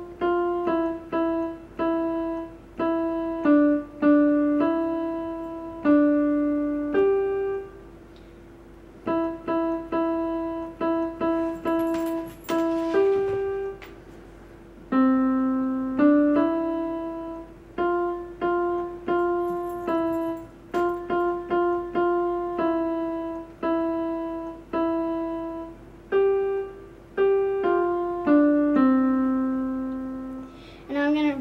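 Electronic keyboard in a piano voice playing a simple tune note by note, each note fading after it is struck, with a few lower notes under the melody. The playing pauses briefly twice, about a third and about halfway through.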